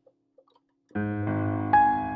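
Piano playing a D-flat 6/9 chord broken up rather than struck all at once: after a near-silent first second, the low notes sound and further notes are added one after another, rolling upward to a higher melody note near the end, an arpeggiated gospel voicing.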